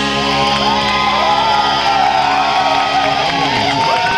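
Live rock band holding a final sustained chord, with the crowd cheering and whooping over it; the chord stops just before the end.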